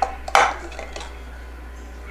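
A hard object set down or knocked on a tabletop: one sharp clatter about a third of a second in, followed by a couple of fainter clicks.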